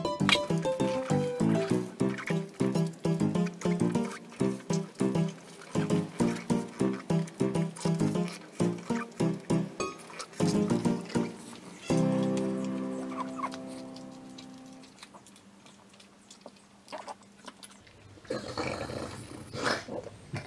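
Closing music: a quick tune of short, evenly repeated notes that stops about twelve seconds in, leaving a held chord that fades away. Near the end, a pug eating a piece of toast can be heard.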